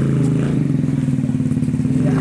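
A motor vehicle's engine running steadily with a low, even throb.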